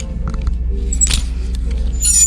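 Metal clothes hangers sliding and clinking along a clothing rack while garments rustle, with a louder scrape about a second in, over background music and a steady low hum.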